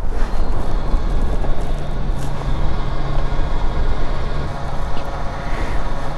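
Fuel dispenser pumping petrol into a motorcycle's tank through the nozzle, a steady low hum with a rushing hiss.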